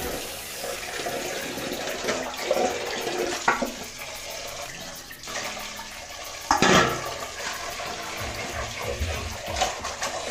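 Water splashing and pouring as sardines are rinsed by hand in steel pots, during the final wash of the cleaned fish. Two sharp knocks stand out, about three and a half and six and a half seconds in.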